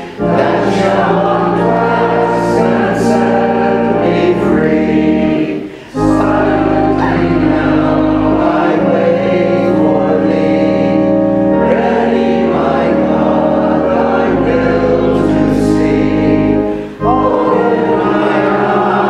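A hymn sung by a group of voices with organ accompaniment, in long held phrases. There are short breaths between the phrases, about 6 s and 17 s in.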